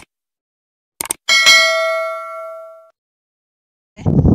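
Subscribe-button animation sound effect: short clicks, then a single notification bell ding that rings out and fades over about a second and a half.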